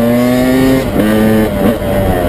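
KTM EXC two-stroke enduro bike engine revving under way, heard from the rider's seat. Its pitch climbs steadily, then drops and breaks off briefly just under a second in, and again near the end.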